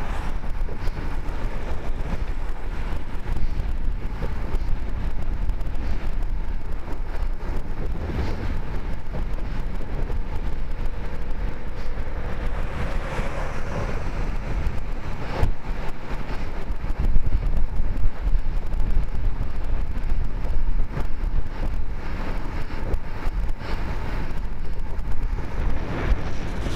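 Steady wind rushing over a bike-mounted camera's microphone on a fast road ride, with low rumble from the road. A pickup truck passes, swelling the noise around the middle, and a few sharp knocks come a little later.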